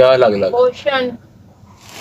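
Speech: a person says a few words in the first second, then only quiet background.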